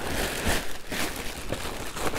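Plastic packaging crinkling and rustling as hands rummage inside a shipping box under a plastic-wrapped foam insulation liner, with a few light knocks.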